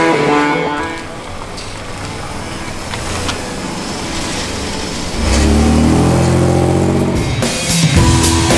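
Chevrolet Camaro's engine accelerating as the car pulls away: a loud, rising engine note for about two seconds, starting about five seconds in. Rock music with guitar fades at the start and comes back near the end.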